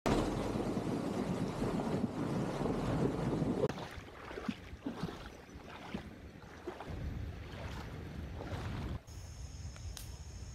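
Water splashing and rushing as an SUV's wheels drive through a shallow river, loudest for the first few seconds, with wind on the microphone. It is followed by quieter flowing water, and about nine seconds in, after a sudden change, a steady high chirring of insects.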